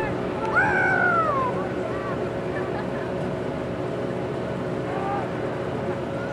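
Shouted voices carrying across an open football field: one long, falling call about half a second in, then fainter calls near the end, over a steady background hum.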